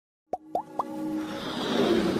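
Animated-intro sound effects: three quick rising plops, each a little higher than the last, then a whoosh that swells louder.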